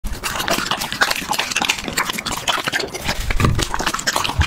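Alaskan Malamute eating a slice of raw meat: a quick run of wet slurping, smacking and chewing clicks, with a heavier low gulp about three and a half seconds in.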